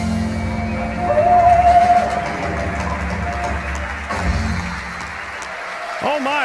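Live rock and roll band with grand piano and electric guitars playing out the close of a song, with a loud wavering held note about a second in. The band's low end drops away near the end.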